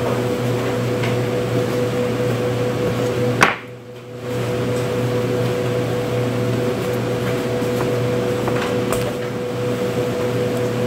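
Steady machinery hum with one clear steady tone. About three and a half seconds in, a sharp click comes and the hum cuts out for under a second, then resumes. There are a few faint light clicks near the end.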